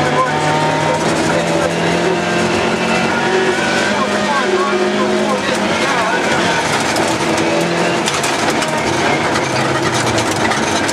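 Rally car engine running hard, heard from inside the cabin, its note rising and falling with the throttle, over a constant rush of tyres on a loose gravel road.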